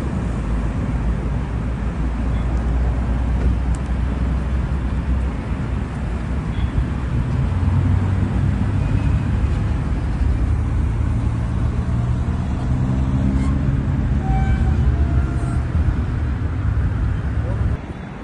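Car engine running close by as the sedan rolls slowly, a steady low rumble over street traffic noise.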